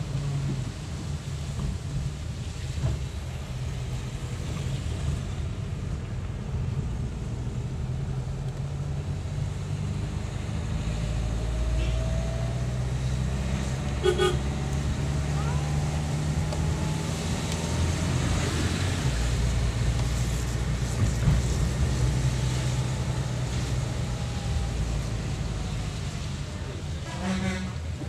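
Engine drone and road noise from inside a moving vehicle, steady throughout, with a short horn toot about halfway through.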